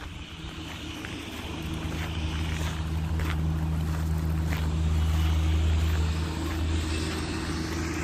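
A low, steady engine drone that grows louder over the first five seconds or so, then eases slightly.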